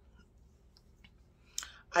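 Faint room tone with a few small mouth clicks, then a sharper lip smack about a second and a half in, just before speech resumes near the end.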